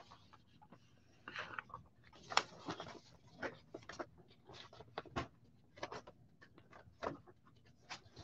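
Faint, irregular small clicks and taps, with a soft breath or two in between.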